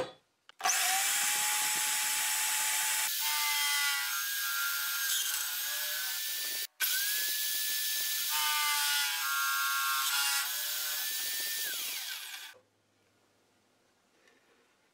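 Electric drill in a drill stand running and boring a hole through the 8 mm acrylic base of a jig with a twist bit: a steady motor whine over loud cutting noise, starting about half a second in. It cuts off for an instant just under seven seconds in, then runs on and stops near the end.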